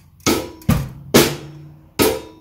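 Drum kit played slowly with sticks and bass-drum pedal: four sharp snare and bass-drum strokes about half a second apart, each ringing briefly.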